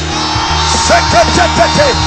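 Keyboard music holding a sustained chord. From about a second in, many voices shout in short, rising-and-falling cries: a congregation shouting on the count of three.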